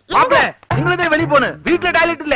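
Excited, agitated voices with pitch that swoops sharply up and down, in quick bursts with a short break about half a second in.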